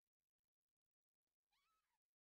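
Near silence: room tone, with a very faint short call near the end whose pitch rises and then falls.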